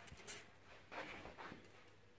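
Very faint, soft sounds of three dice thrown onto a grass-flocked gaming board, two brief ones about a third of a second and a second in, otherwise near silence.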